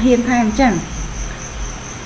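A steady high-pitched insect trill that runs on unbroken, with a voice speaking over it in the first part.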